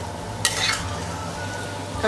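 Flat metal spatula scraping a steel kadai while stirring frying ground green peas and masala: one short sharp scrape about half a second in, over a low steady hum.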